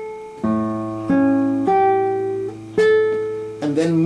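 Nylon-string classical guitar played slowly: a low A bass is plucked together with a melody note, then three more single notes follow about half a second to a second apart, each left ringing over the held bass.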